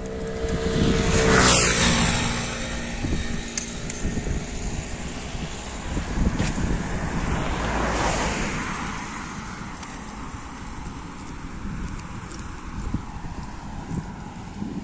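A motor vehicle passes close by about a second and a half in, its engine tone dropping as it goes past, and a second vehicle swells past near the eight-second mark. Wind rumbles on the microphone throughout.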